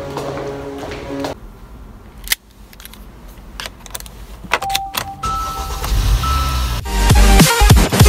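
A car key clicking in the ignition, two steady dashboard chime tones, then the engine starting with a low rumble about five seconds in. Loud electronic music cuts in near the end.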